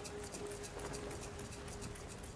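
A held low drone with a quick, even ticking on top, about six ticks a second, from the trailer's soundtrack.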